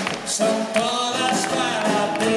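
Live band music with guitars, upright bass and drums, playing a Latin-flavoured song, held melody notes ringing over the band, as heard from the audience.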